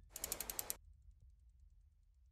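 Ratchet-like clicking sound effect in a logo animation: a quick run of about ten sharp clicks lasting about half a second, ending abruptly less than a second in.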